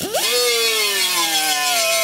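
Small air-powered right-angle die grinder with an abrasive pad starting up and running: a whine over a hiss, its pitch easing slowly downward as the pad works the black coating off square steel tubing before welding.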